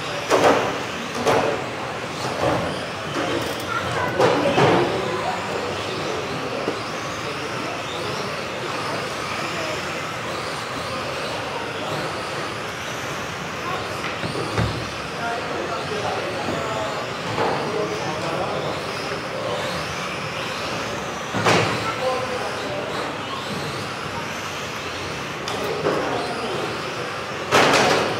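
Several electric RC touring cars racing on an indoor carpet track: a steady high whine of motors rising and falling as the cars pass, in a reverberant hall, with a few sharp knocks along the way.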